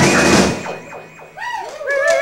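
A live band finishes a song: a guitar note slides up and is held, then the drums and guitars stop dead about half a second in, leaving a fading ring. Near the end a few high, wavering tones rise and fall.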